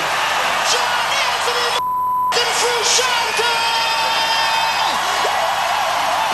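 A man's voice yelling over a cheering rock-concert crowd, with one word cut out by a short steady bleep about two seconds in. A steady buzz runs under the whole track.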